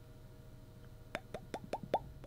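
A quick run of about five short hollow pops, roughly five a second, starting about a second in over a faint steady hum.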